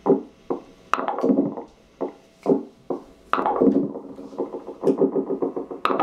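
Electronic, synthesizer-like music: pitched notes with sharp attacks and decaying tails, repeating, then breaking into quick pulses of about five a second in the second half.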